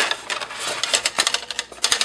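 Foam fuselage of an RC autogyro rubbing and scraping against its moulded foam packing tray as it is pulled out of the box, with rustling plastic wrap and dense, irregular clicks.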